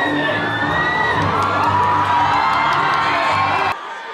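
A large crowd of fans screaming and cheering, many high voices at once; it cuts off suddenly near the end.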